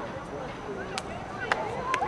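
Three sharp smacks, the first about a second in and the others about half a second apart, with voices calling across an open field.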